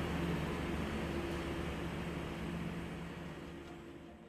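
Machinery of an air separation plant running: a steady hum with several low held tones over an even hiss. It fades down in the last second.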